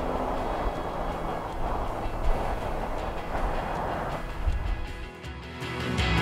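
Steady outdoor background noise, a low rumble and hiss, then music fading in over the last second or two.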